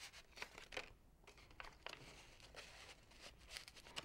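Faint rustling and crinkling of facial tissue and construction paper as the tissue is pushed down into a paper cutout with a pencil, in short irregular scratchy bits.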